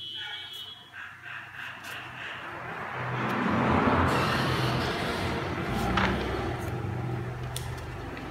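A broad rushing noise swells to a peak about four seconds in and fades slowly. A voice is heard in the first two seconds, and there is a sharp click about six seconds in.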